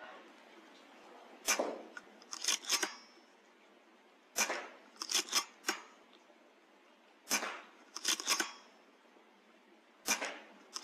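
Three shots from a Weihrauch HW100 .22 pre-charged air rifle, each a sharp crack followed about a second later by a quick run of three metallic clicks as the action is cycled to load the next pellet from the magazine.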